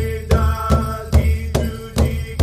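Powwow drum group: a large hand drum struck in a steady beat, about two and a half strokes a second, with singers chanting long held notes over it.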